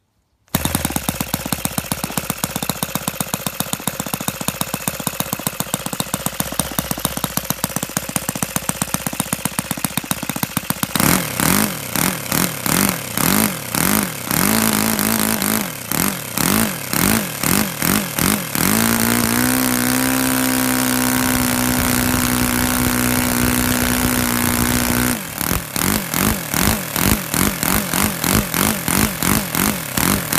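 Laser 100 single-cylinder four-stroke model aircraft engine, converted to petrol with spark ignition, catching on a hand-flick of its 15×8 propeller about half a second in. It runs evenly at a low speed for about ten seconds, then the throttle is opened and closed repeatedly so the engine revs up and down, holds a steady higher speed for several seconds, and is revved up and down again near the end.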